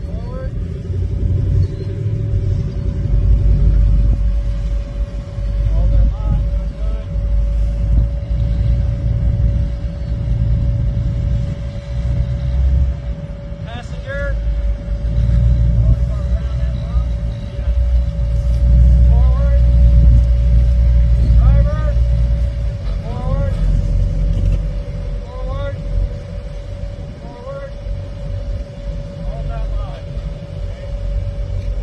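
Rock-crawler buggy's engine running at low revs as it crawls up a rock ledge, its deep rumble swelling and easing with the throttle, under a steady thin whine.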